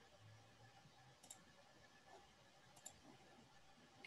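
Near silence with two faint computer-mouse clicks, about a second and a half apart, while a screen share is being started.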